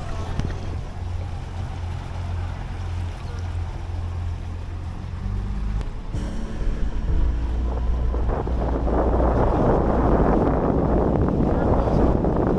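Motorboat engine running with a steady low hum. From about halfway through, wind on the microphone and the rush of water grow louder over it.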